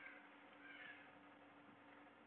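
Near silence: room tone with a faint steady hum and a faint, brief sound about half a second in.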